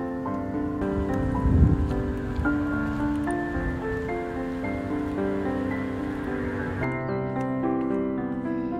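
Gentle instrumental background music of sustained, changing notes. About a second and a half in there is a brief low rumble, the loudest moment, and a faint hiss of outdoor noise sits under the music until it cuts off near the end.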